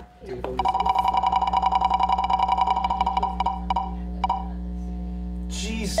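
Game-show category-wheel spin sound effect: a rapid run of ticks over a steady electronic tone. The ticks space out and stop about four seconds in.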